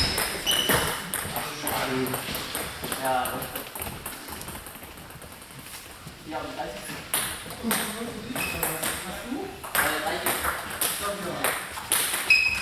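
Celluloid or plastic table-tennis balls clicking off bats and tables in a sports hall, a scatter of sharp, irregular pings from several tables at once, with voices talking in the hall.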